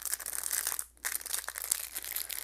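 Clear plastic blister packaging on a card backing crinkling and crackling as it is handled and opened, a quick run of small crackles with a short pause about a second in.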